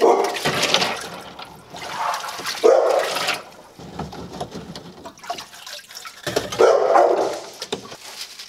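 Water splashing and sloshing in an aquarium sump filter's compartments as hands work in it, in three bursts of about a second each.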